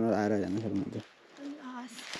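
A voice trailing off in the first second, then a dove's short, low, faint coo about halfway through.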